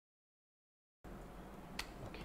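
Dead silence for about a second, then faint room tone with a low hum, and a single short, sharp click near the end.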